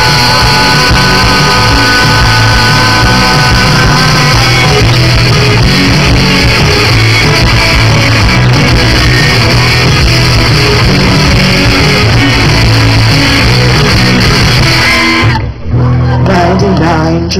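Live rock band playing an instrumental passage with electric guitar and bass, recorded loud on a camera's built-in microphone. A guitar holds a long note over the first few seconds. The music drops out briefly just before the end.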